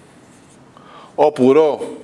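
Marker pen writing on a whiteboard, a faint scratching in the first second, before a man's drawn-out spoken syllable takes over.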